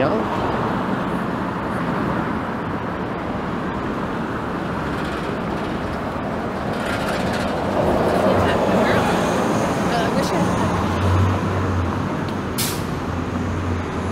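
Steady traffic noise on a busy downtown street, cars and buses passing. From about three-quarters of the way in, a city bus engine adds a low hum, and a short, sharp hiss comes near the end.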